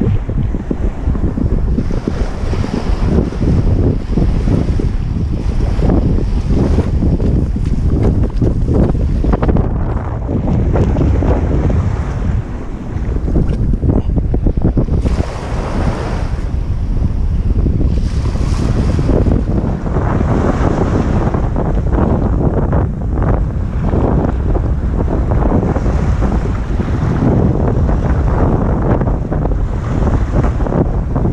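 Strong wind buffeting the camera microphone in low, gusting rumbles, over small waves washing along the shoreline, with a few louder hissing surges of water.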